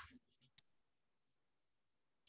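Near silence: room tone, with one faint click about half a second in.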